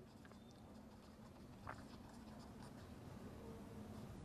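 Near silence, with the faint scratching of a ballpoint pen writing on paper and one small tick about one and a half seconds in.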